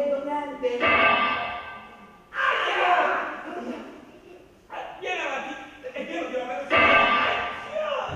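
A man's voice in long, drawn-out sung phrases, each starting suddenly and fading away, ringing in a large hall.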